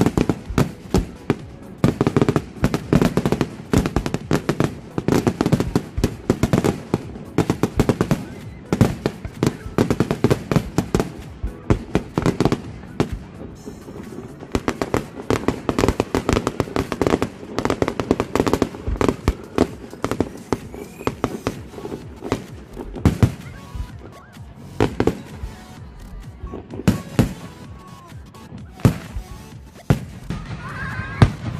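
Fireworks display: aerial shells bursting in rapid, dense volleys of bangs and crackles. After about twenty seconds it thins to a few separate, louder bangs a second or two apart.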